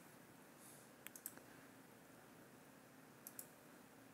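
Faint computer mouse clicks in near silence. A quick cluster of three comes about a second in, and two more come near the end.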